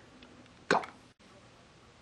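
Quiet room tone, broken by one short spoken word about two-thirds of a second in and a moment of dead silence just after a second.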